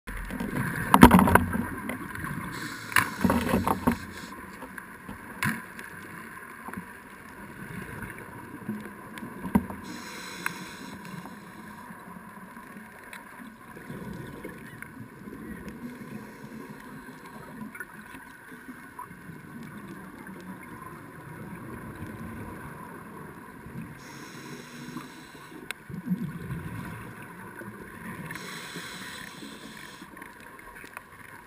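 Muffled underwater noise picked up through a waterproof camera housing, with several sharp knocks in the first four seconds, a few more later, and short bursts of hiss now and then.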